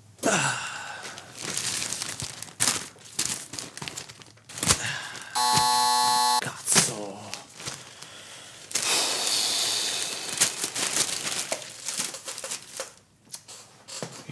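A produced sound-effects passage of scattered knocks and clicks. About five seconds in, a flat electronic buzzer tone is held for about a second, and a long stretch of hissing, rushing noise follows around nine seconds in.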